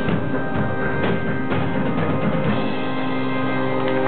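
Live band playing a song with a drum kit. The drums and bass stop about two-thirds of the way through, leaving a steady held chord ringing as the song closes.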